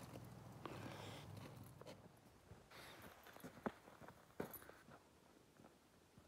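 Faint footsteps of a person and a dog crunching on a snow- and ice-covered road, with a few sharp clicks, the loudest a little past the middle.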